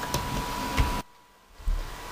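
Steady microphone hiss with a few low bumps and rumbles as a cardboard palette box is handled close to the camera. The sound drops out almost completely for about half a second midway.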